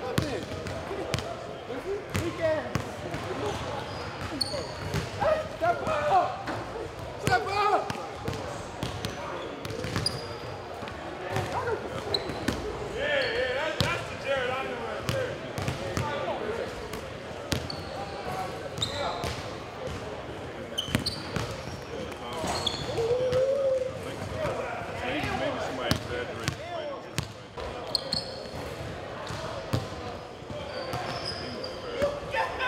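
Basketball bouncing and being dribbled on a hardwood gym floor in irregular thuds, with players' voices talking in the background.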